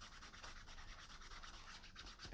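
Faint rubbing of a wet heavy-duty hand wipe scrubbing the grimy liner inside a felt hat, in quick repeated strokes.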